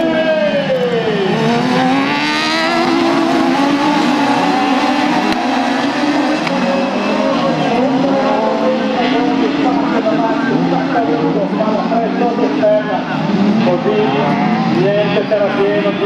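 A pack of Buggy 1600 autocross buggies racing at high revs on a dirt track, several engines overlapping, with one pitch falling sharply about a second in as a buggy passes and revs rising and dropping through corners and gear changes.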